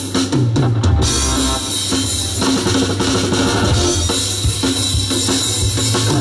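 Live rock-and-roll band playing, the drum kit to the fore over bass and electric guitar, with a quick run of drum strokes in the first second.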